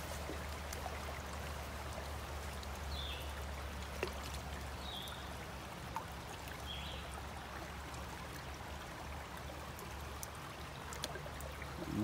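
Steady rushing of a creek running high after heavy rain, with a couple of faint clicks.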